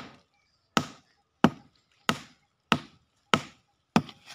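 Hatchet chopping into the rotten, fibrous base of a fallen coconut palm trunk: about seven sharp strikes, roughly one and a half a second, each dying away quickly.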